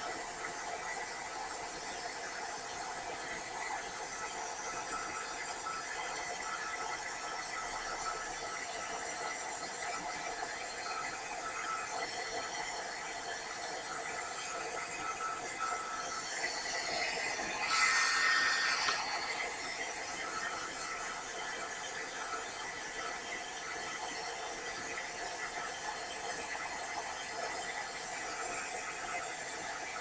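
Craft heat gun running steadily, its fan blowing hot air onto black embossing powder to melt it over a stamped image. It gets briefly louder for a couple of seconds a little past the middle.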